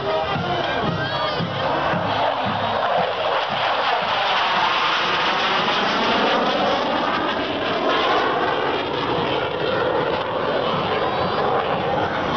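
Saab JAS 39 Gripen fighter jet flying past overhead. Its jet noise builds from a couple of seconds in, peaks around the middle with a sweeping, phasing sound, and eases off near the end. Crowd voices and marching-band drums are heard underneath, most clearly at the start.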